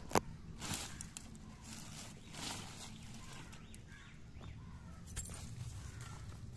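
Soft rustling and handling noise as a hand brushes among bean vine leaves, with a sharp click just after the start and a few brief rustles, over a low steady hum.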